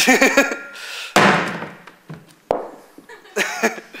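A heavy volcanic bomb, a block of rock, dropped onto the stage floor, landing with one loud thud about a second in that rings on in the hall, followed by a lighter knock.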